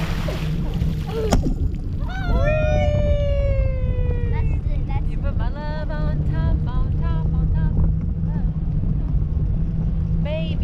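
Sea water splashing and spraying around the parasail riders' dragging feet, then, once they lift clear, a girl's long falling whoop followed by repeated short squeals and giggles, over a steady low wind rumble on the microphone.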